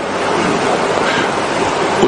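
A steady, even rushing hiss with no voice in it, the background noise of the hall recording that also lies under the talk around it.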